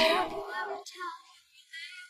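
A girl's crying voice trailing off in a wavering wail within the first half second, followed by a couple of faint whimpers and near quiet.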